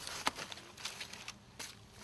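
Faint rustling and a few soft, scattered clicks from field work on black plastic mulch and soil.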